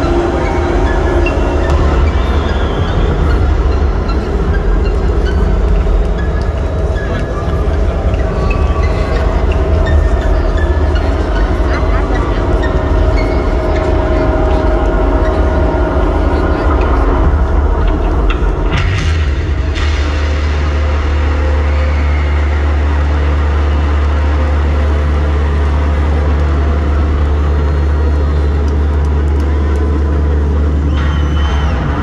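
A deep rumbling drone from the arena sound system under crowd cheering and shouting. About two-thirds of the way in, a hit gives way to a steady, deep held tone that carries on to the end.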